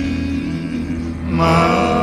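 Male gospel vocal quartet singing, the voices holding a low chord, with a higher sung note coming in about one and a half seconds in.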